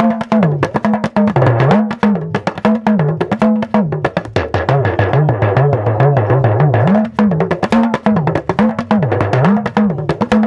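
Yoruba talking drum, an hourglass pressure drum struck with a curved stick, played in a fast, continuous pattern. Its pitch slides up and down between a low and a high tone as the tension cords are squeezed and released.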